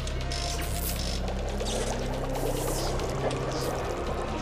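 Liquid pouring from a tube into a glass flask, the splashing growing denser about halfway through, over background music with a low steady drone and a slowly rising tone.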